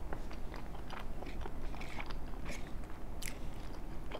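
Close-miked chewing of a mouthful of chicken and cheese enchiladas, a steady run of small wet mouth clicks and squishes. A sharper click comes about three seconds in as the fork goes back to the plate.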